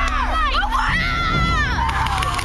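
Several boys shouting and screaming together, their voices sweeping sharply up and down in pitch.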